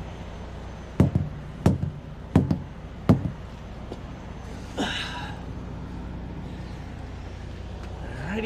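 Four sharp thumps about two-thirds of a second apart as a semi-truck's tire is struck during a walk-around tire check, over the steady low hum of the idling truck. A short rasping noise follows about five seconds in.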